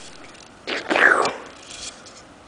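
A short breathy, whispered-sounding vocal noise from a child, rising and falling in pitch, lasting under a second around the middle.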